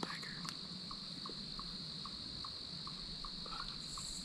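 Insects trilling: a steady high-pitched drone with a lower chirp repeating evenly about three times a second.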